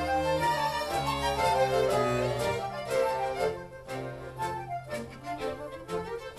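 An accordion orchestra with violins and cello playing a piece together, a melody over sustained bass notes, softer in the second half.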